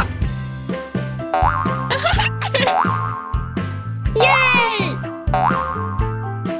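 Children's cartoon background music with a repeating bass line, overlaid with short rising and falling pitch-glide sound effects and wordless cartoon voices; the busiest burst of effects comes a bit past four seconds in.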